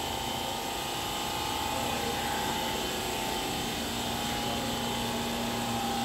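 Steady machinery hum with a constant mid-pitched tone over a lower drone and even background noise.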